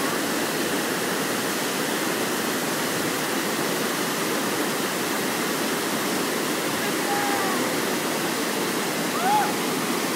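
Steady rush of river water pouring over a weir. A few short, high calls break through near the end.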